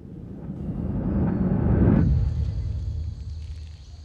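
A TV drama's scene-transition whoosh: a low rumbling swell that builds for about two seconds, then drops away, leaving a faint hiss.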